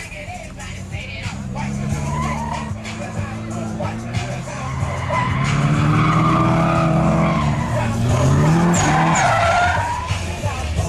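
Drift car's engine revving up and down while its rear tyres squeal in a sideways slide, growing louder about halfway through.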